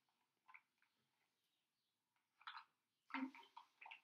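Near silence: room tone broken by a few faint, short sounds, and a brief quiet murmur of voice near the end.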